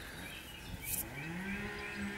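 A cow mooing: one long low call that rises in pitch and then holds steady, starting under a second in. A brief rustle comes just as the call begins.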